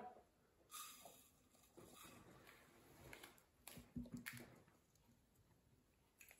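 Near silence broken by a few faint taps and rustles of a small plastic measuring scoop on a clear plastic squishy mould as powder is tipped in. The clearest taps come about four seconds in.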